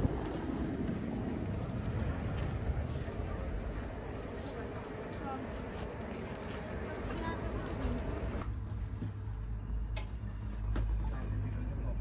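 Background voices of people talking in the open air. About eight and a half seconds in, this gives way to a steady low hum inside a ropeway gondola cabin, with a single sharp click shortly after.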